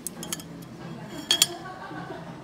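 Tableware clinking during a meal: a few light clicks, then two sharp ringing clinks in quick succession past the middle, over a steady low background hum.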